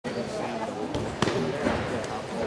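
Background voices of people talking, with two sharp knocks, one about a second in and another just after.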